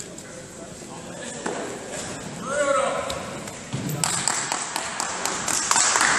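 Indistinct voices in a large echoing hall, then from about four seconds in a quick run of sharp slaps, several a second.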